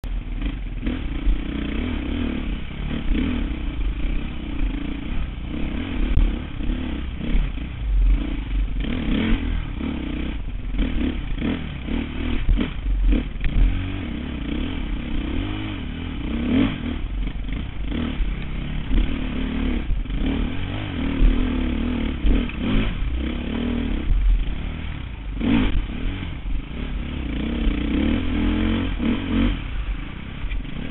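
Dirt bike engine running, its pitch constantly rising and falling as the throttle is worked. Frequent knocks and rattles come from the bike over rough trail.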